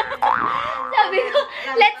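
A young woman's voice chattering playfully and laughing, with a short rising pitch sweep about a quarter second in.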